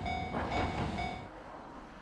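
Diesel railcar running along the track: a rumble with a steady whine over it. It fades away about a second and a half in.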